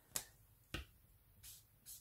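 Two faint, sharp clicks, then two short scratchy strokes of a felt-tip marker on paper near the end as a chart sector is hatched in.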